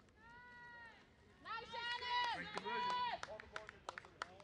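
Women's voices yelling drawn-out, high-pitched calls: one short call, then several louder overlapping ones in the middle, followed by a few scattered sharp claps.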